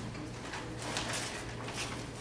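Steady low hum of a room's equipment, with soft, scattered rustling of paper and envelopes being handled.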